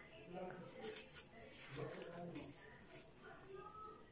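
Faint crinkling of a paper pinwheel being held and pressed at its glued centre between the fingers, with a few brief crackles about a second in.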